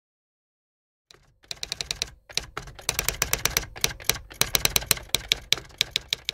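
Typewriter keys clacking in quick, uneven runs as a typing sound effect, starting about a second in with a brief pause a second later.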